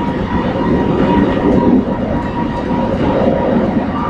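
Kelana Jaya line LRT train pulling into an elevated station platform: a steady train running noise with a faint high whine that dips in pitch near the end.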